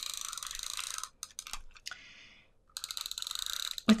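Handheld tape runner drawn across cardstock in two strokes of about a second each, its spool clicking rapidly as it lays down adhesive, with a few light clicks between the strokes.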